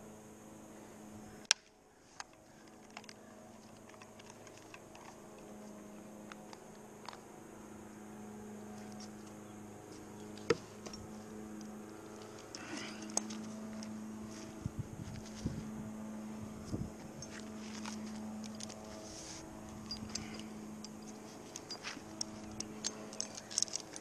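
Scattered clicks and light knocks of climbing hardware, rope and gloved hands against a tree trunk, over a steady low hum. One sharp click comes about a second and a half in, and the clicks come more often in the second half.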